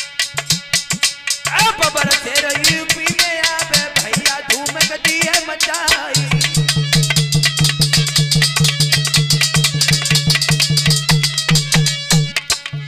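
Aalha folk music: a harmonium with fast, continuous drumming. A wavering melody line runs through the first half, and from about halfway a steady low held tone sits under the quick drum strokes.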